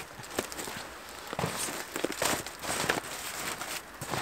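Flattened cardboard sheets being handled and laid down on a compost heap: irregular rustling, scraping and crinkling with soft knocks.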